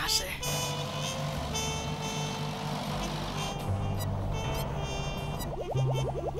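Cartoon background music over a low, steady engine drone from a slow-moving farm tractor and delivery van.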